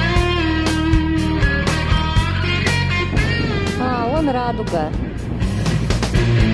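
Background rock music with guitar and a steady beat, with a wavering, bending melody line a few seconds in.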